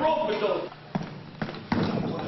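Boxing gloves landing punches in sparring: three sharp thuds, about a second in, at a second and a half, and just before the end, after a man's voice at the start.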